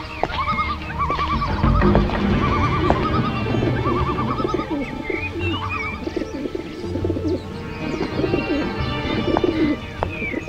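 Film soundtrack: a low background music score under repeated bird calls, short warbling trills about once a second, with a few higher chirps midway.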